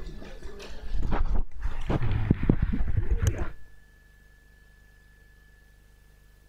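Irregular knocks, bumps and rustling in a meeting room, picked up by an open microphone, cutting off abruptly about three and a half seconds in. After that only a faint steady high whine remains.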